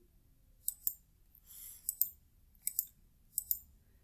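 Computer mouse button clicked four times, about a second apart, each a quick press-and-release double click, advancing the slides of a presentation.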